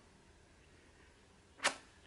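Quiet room tone, then a single short, sharp click about a second and a half in.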